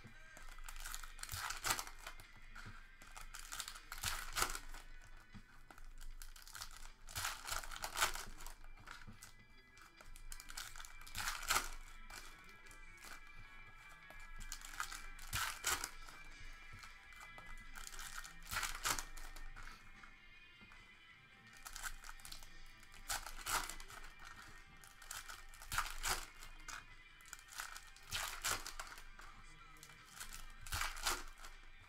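Foil basketball card pack wrappers crinkling and tearing as packs are ripped open, in repeated bursts every second or two, with background music playing throughout.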